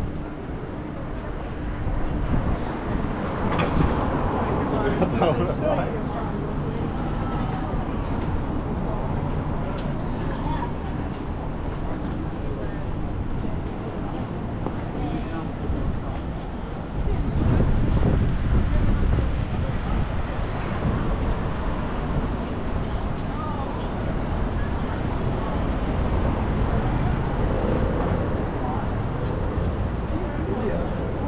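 City street ambience: road traffic running past with the voices of passers-by. A louder vehicle passes a little past halfway through.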